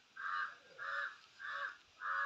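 A bird calling: three short, evenly spaced calls a little over half a second apart, with a fourth beginning at the end.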